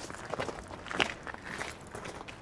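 Footsteps of a few people walking, several irregular steps with the firmest about a second in.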